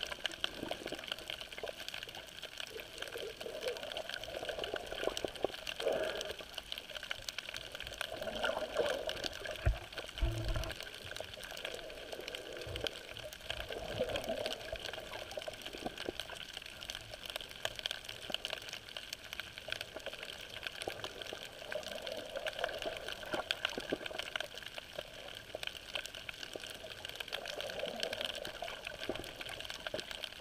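Muffled underwater water noise picked up by a camera held below the surface while snorkeling, swelling every few seconds, with faint scattered clicks.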